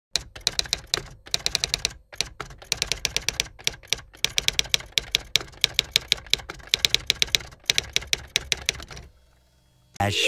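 Typewriter typing sound effect: quick runs of key clicks with brief pauses, stopping about a second before the end.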